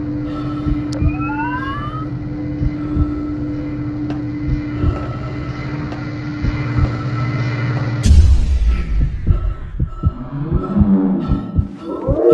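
Synthetic horror sound design: a steady electrical hum with low throbbing pulses, and a short rising whine about a second in. About eight seconds in a sudden loud burst of noise cuts the hum off, followed by irregular heavy thuds.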